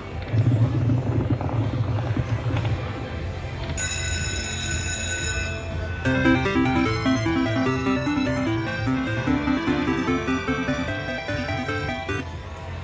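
Slot machine's electronic game sounds. Reel-spin noise runs over a low rumble, a bright chime sounds about four seconds in, and from about six seconds a fast run of stepping melodic tones plays as the win total counts up.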